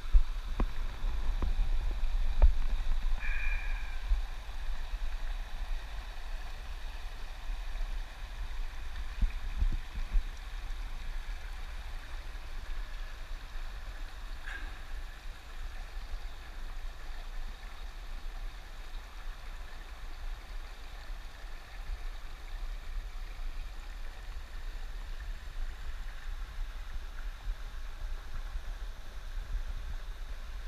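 Oak Creek running and gurgling over rocks in a shallow mountain stream, a steady rushing noise. Low rumble and thumps on the handheld camera's microphone are strongest in the first ten seconds, and a brief high chirp sounds about three seconds in.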